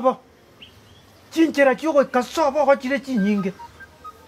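Speech: a person talking in an animated voice, with a pause of about a second near the start.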